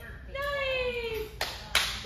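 A high-pitched voice draws out a long falling note, then two hand claps follow close together near the end.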